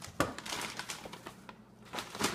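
A sharp knock as a plastic Kinder Joy egg is set down on a wooden table, followed by the crinkling of a brown paper bag being handled for about a second.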